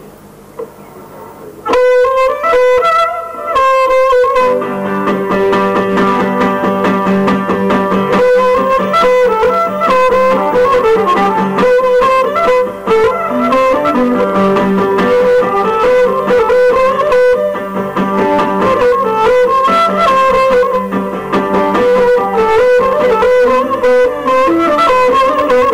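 Cretan lyra with guitar accompaniment playing a traditional tune live. The music starts suddenly about two seconds in with the melody, and the fuller guitar accompaniment fills in underneath a couple of seconds later.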